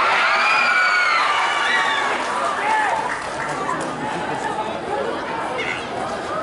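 A crowd of spectators shouting and cheering in reaction to a penalty kick, many voices overlapping, loudest in the first couple of seconds and then settling into lower shouting and chatter.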